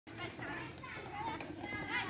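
Many children's voices shouting and calling at once, overlapping, fairly faint and growing louder toward the end.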